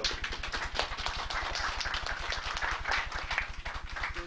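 A small audience clapping: a dense, irregular run of claps, over a steady low electrical buzz.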